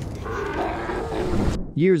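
Film soundtrack: an animal-like growling roar over a low rumble, cut off abruptly near the end, after which a man's narrating voice begins.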